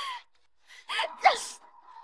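Sharp startled gasps with short breathy cries: one at the start, then two more about a second in, falling in pitch.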